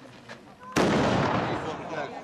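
A small model bombard cannon fires about three-quarters of a second in: a sudden bang that trails off over about a second as the powder charge goes off.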